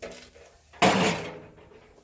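An antique galvanized metal tub set down: one sudden, loud knock a little under a second in that rings away over about half a second.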